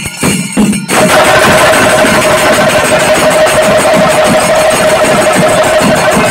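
Chenda drums and ilathalam cymbals of a Kerala percussion ensemble. Separate drum strokes give way suddenly, about a second in, to dense fast drumming with cymbals clashing and a steady held note over it.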